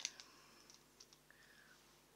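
Near silence, with a few faint clicks and a brief faint high tone about two thirds of the way through.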